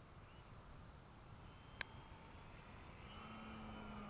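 Faint hum of a radio-controlled Gee Bee model airplane's motor and propeller in flight, growing a little louder in the last second as the plane comes nearer. A single sharp click sounds about two seconds in.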